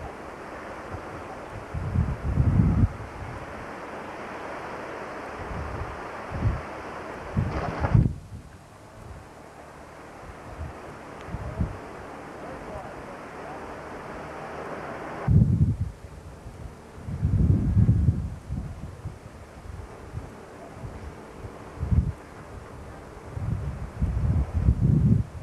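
Wind buffeting the microphone: short low gusts come and go over a steady rushing hiss, and the background changes abruptly twice where the recording cuts.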